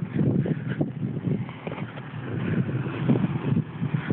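Irregular rumbling and rustling noise of wind and handling on a handheld camera's microphone while walking, with no steady engine or pitched sound.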